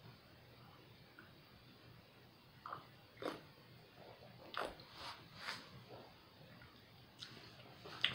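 Soft mouth sounds of someone tasting a sip of cider: a few short lip smacks and tongue clicks spread from about three seconds in, otherwise quiet.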